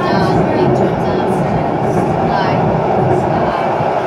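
Steady running noise inside a moving tram, with passengers' voices over it.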